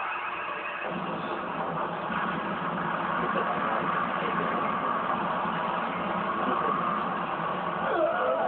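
Steady rushing roar of anime battle sound effects, thickening at the low end about a second in, heard from a TV speaker through a phone's microphone.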